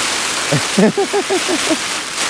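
Rain falling steadily on a cuben fibre (Dyneema) tarp shelter, heard from inside as a continuous hiss. Over it, from about half a second in, a man laughs in a quick run of short "ha" pulses.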